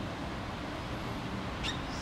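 Steady room noise from a large hall, with one short high squeak near the end.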